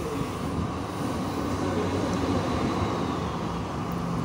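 Steady rumbling room background noise with a faint low hum. It carries on evenly through a pause in the talk.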